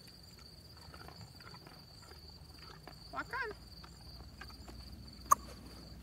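A single sharp click from a handheld training clicker about five seconds in, the marker that tells the horse he has done the right thing. Under it, a steady high trilling of insects.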